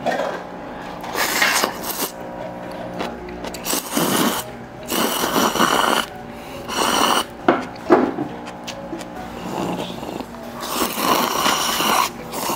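Loud slurping of noodles and broth from a paper cup, in repeated noisy bursts about every second or two, with faint steady background music underneath.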